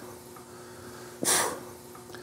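A man's single short, sharp exhale of effort about a second in as he curls the handles of a biceps machine, over a faint steady hum.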